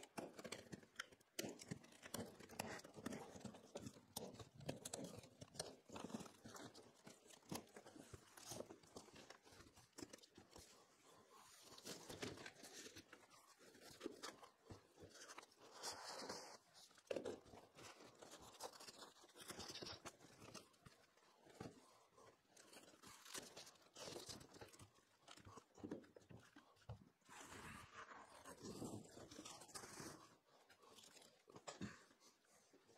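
Faint, irregular rustling, tearing and knocking of cardboard boxes and packaging as the strapped boxes are cut open and the kit parts are unpacked.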